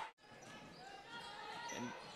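Faint game ambience from an indoor basketball court, starting after a brief dropout at the start.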